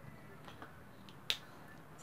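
One sharp click a little past halfway through, a marker tapping against a whiteboard.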